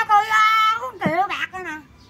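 A woman's high-pitched voice, speaking in a sing-song way with some long held syllables, stopping shortly before the end.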